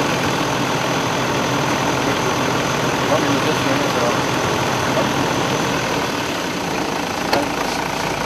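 Steady street noise of idling vehicle engines, with indistinct voices under it and a single sharp click near the end.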